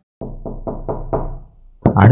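Quick knocking on a wooden door, a run of about six knocks in a little over a second.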